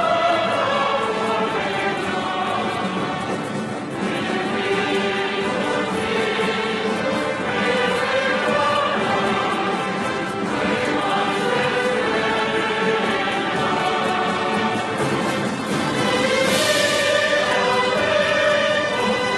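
A very large youth orchestra and choir performing together, with sung voices over held orchestral chords at a steady, full level.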